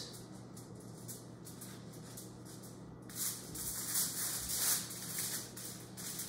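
Aluminium foil lining a baking tray crinkling and rustling faintly under hands working a braided dough loaf, in a few short bursts in the second half.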